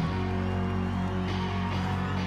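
Live rock band playing, with bass and guitar over held chords; the chord changes right at the start.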